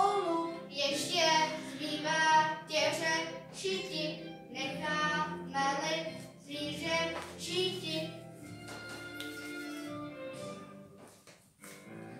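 Children singing a song with music, the voices stopping about eight seconds in and a quieter held tone fading away just before the end.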